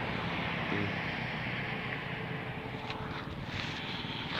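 Kawasaki KX250F single-cylinder four-stroke motocross bike's engine heard faint in the distance, slowly fading as it rides away.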